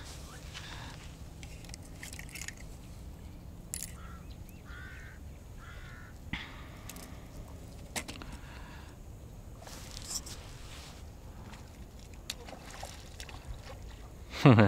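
Quiet outdoor background with scattered sharp clicks from a plastic lure box being handled, and a bird giving three short calls about four to six seconds in.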